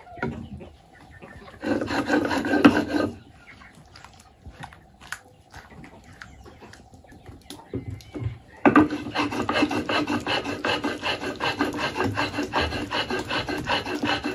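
Stone hand roller (mano) grinding salsa ingredients on a stone metate, a steady rhythmic rasp of stone on stone that starts a little past halfway. Earlier, about two seconds in, there is a brief loud scraping.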